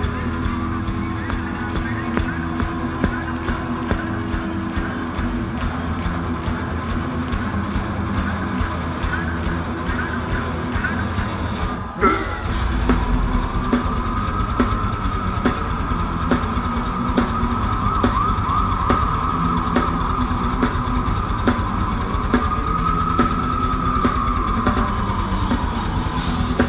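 A metal band playing live: dense, fast drumming with distorted guitar and bass. The sound dips briefly about twelve seconds in, and after that a long, wavering high note is held above the band until just before the end.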